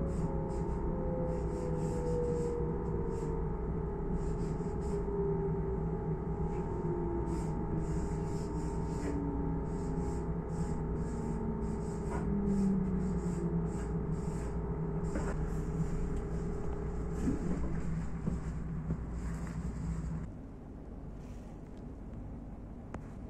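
Electric S-Bahn train's motor whine, falling slowly and steadily in pitch as the train slows, over a steady rumble; the whine stops and the rumble drops away near the end. Short scratchy strokes of a marker writing on a metal seat panel come and go over it.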